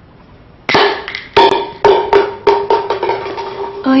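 A plastic pill bottle being shaken, the pills rattling in a quick, irregular run of sharp clicks that starts about a second in and continues to the end.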